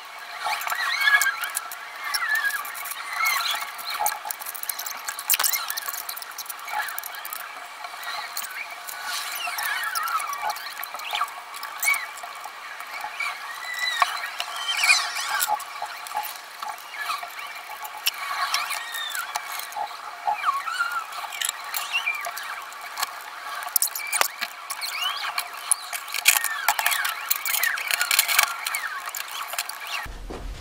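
Fast-forwarded recording of workshop tidying: dense, rapid high-pitched chirps and squeaks with quick clicks and clatter of metal parts, thin and without any low end.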